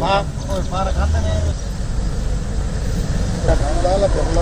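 Men's voices talking outdoors over a steady low rumble, with a gap of about two seconds in the talk in the middle.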